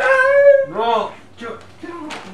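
A man's high-pitched wordless wailing: one long held cry, then a few shorter rising-and-falling ones, like a dog's howl and whimper.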